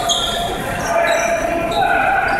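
Basketball game sounds in a gym: sneakers squeaking in short high-pitched chirps on the hardwood court, with voices in the background.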